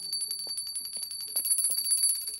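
Small brass puja hand bell rung rapidly and continuously: a high, steady ring driven by fast, even clapper strokes.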